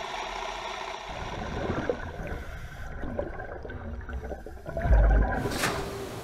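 Underwater sound of bubbles gurgling over a low rumble, with a louder low surge about five seconds in.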